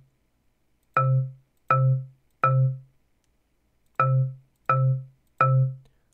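Chrome Music Lab Song Maker's synthesized marimba sounding the same low note (Do) three times in even succession, then again three times. Each note plays as it is clicked into a measure of the grid.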